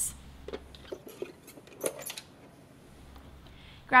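ADX manual soap dispenser being opened by pressing its side release buttons: a few sharp plastic clicks and knocks in the first two seconds as the catch lets go and the front cover swings open, then quiet.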